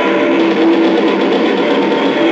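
Live rock band playing, with electric guitar, bass and drums; the electric guitar holds long sustained notes. The camcorder recording has a thin sound, with almost no deep bass.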